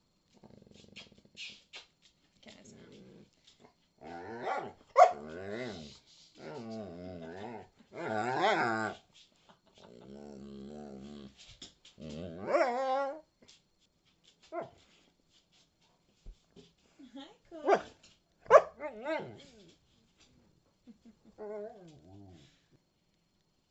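A talkative dog vocalising in bursts: growly, wavering 'talking' sounds that rise and fall in pitch, with a few short sharp barks near the end.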